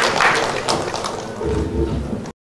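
Audience applause, fading over the two seconds, with a low thud near the end.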